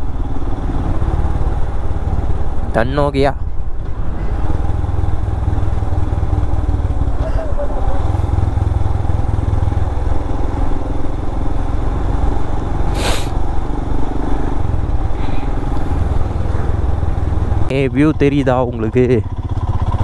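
Motorcycle riding along at a steady pace, its engine and the wind making a continuous low rumble. A short sharp noise cuts through about 13 seconds in.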